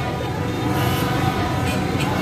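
Loud din of a celebrating street crowd, many voices blending together, with several steady held tones running through it.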